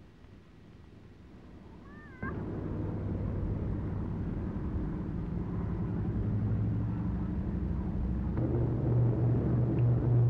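Four-engined propeller airliner's piston engines running in a steady low drone that cuts in suddenly about two seconds in and grows louder, rising further near the end as the plane begins its take-off run. A brief wavering squeal comes just before the engines cut in.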